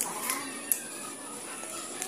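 Small dog whining in short, high whimpers, begging for the food being eaten in front of it, with a couple of light clicks.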